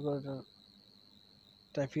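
A man's voice speaking, falling silent for about a second and a quarter, then starting again near the end. A faint, steady, high-pitched tone runs underneath throughout.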